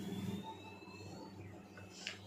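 Quiet kitchen room tone: a faint steady low hum, with a faint thin tone slowly rising in pitch through the first second or so.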